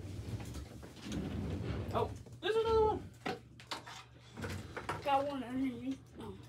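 Wordless vocal sounds, a short rising-and-falling tone about halfway through and a wavering hum near the end, over clicking and rustling as PC power cables are handled, with a steady low hum underneath.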